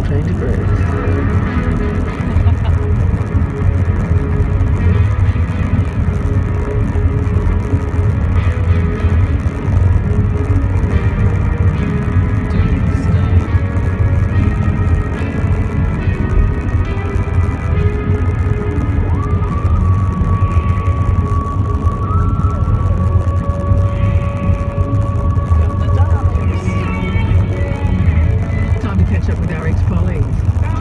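Music from a car radio, with long held notes in its second half, over the steady low rumble of the car's engine and tyres inside the moving car.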